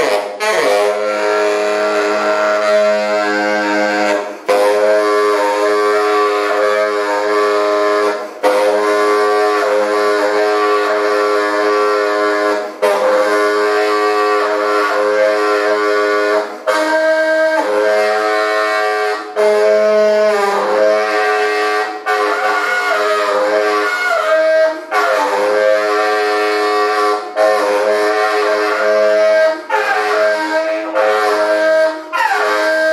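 Solo tenor saxophone playing long, held notes rich in overtones, with some bent pitches, the phrases broken by short breaths every few seconds.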